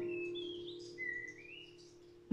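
Acoustic guitar chord ringing out and fading away, with a bird chirping twice over it.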